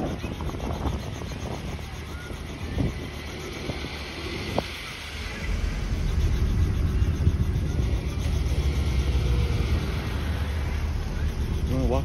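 Small helicopter running on the ground, its engine and rotor making a steady, quickly pulsing sound that grows clearly louder and deeper about halfway through as it powers up.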